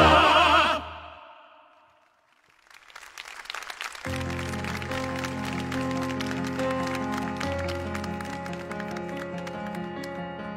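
Male operatic voices end a song on a loud held note with vibrato that cuts off about a second in and dies away. After a short quiet, applause starts about three seconds in, and from about four seconds steady sustained keyboard chords play under it.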